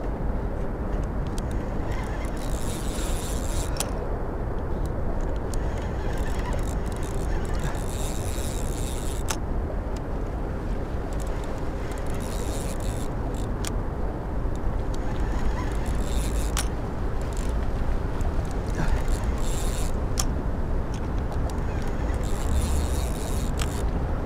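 Wind buffeting the camera microphone: a steady low rumble that swells and eases unevenly, with a few sharp clicks here and there.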